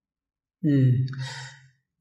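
Dead silence for about half a second, then a man's voiced sigh, slightly falling in pitch and breathy, lasting about a second.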